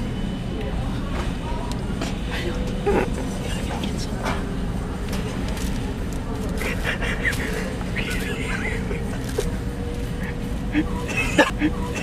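Steady background hum of a large store with indistinct voices, and scattered short knocks, rustles and squeaks as plastic-wrapped paper-towel packs are shifted by hand, more of them near the end.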